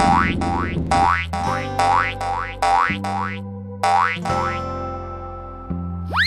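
Cartoon sound effects: a quick run of about ten rising 'boing'-like pops, roughly two a second, stopping a little over four seconds in. Children's background music with steady held notes plays underneath.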